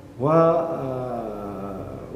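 A man's voice drawing out a long "wa…" (Arabic "and") for about a second and a half, its pitch falling slightly: a hesitation between phrases of his speech.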